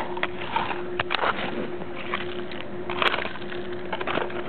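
Hand garden rake digging through dirt and debris: scraping, with short sharp knocks and clicks as the tines hit brick and stones, the loudest about a second in and about three seconds in.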